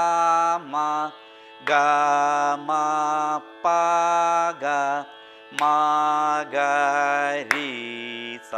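Male Carnatic vocalist singing a madhyasthayi varisai exercise in ragam Mayamalavagowla: swara syllables (sa, ri, ga, ma, pa, dha, ni) in short phrases of held and gliding notes with brief pauses, over a steady drone.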